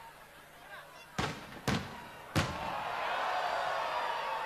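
Fireworks exploding overhead: three sharp bangs in just over a second. They are followed by a steady din of many people's voices.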